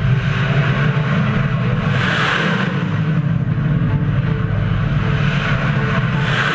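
Missiles launching from a warship: a loud, continuous rocket-motor roar over a deep rumble. The roar swells twice, about two seconds in and again at the end.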